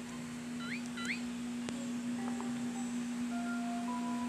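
Cartoon magic sound effect with light chiming music: two quick rising whistle-like glides about a second in, then soft held chime tones near the end, over a steady low hum.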